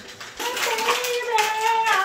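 A person's high, drawn-out wavering cry, starting about half a second in and held for over a second, in a small room.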